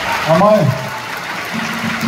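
A man's voice through a microphone in a concert hall: a short spoken word, then a drawn-out, level-pitched hesitation sound, over a steady haze of hall noise.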